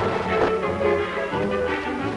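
Orchestral closing theme music of a 1950s sitcom, played at a steady level.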